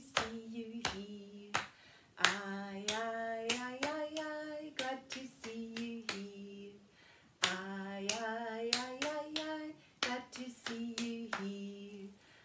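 A woman singing a children's hello song unaccompanied, in held notes that step up and down, clapping her hands in time.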